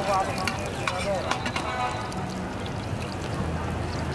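Metal spatula and turner clicking and scraping against a large shallow steel pan as chopped squid fries in oil. The clicks come several times in the first half, over a steady frying noise and background voices.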